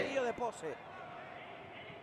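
A man's speech trailing off in the first moments, then a faint, even background of the indoor arena's crowd and pitch noise.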